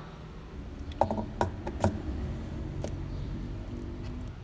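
A few sharp clicks and knocks from hands handling hard objects, bunched about a second into the clip with a couple more later, over a steady low hum.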